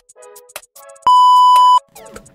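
Electronic background music with a drum-machine beat. About a second in, a loud, steady, single-pitched beep cuts across it for under a second.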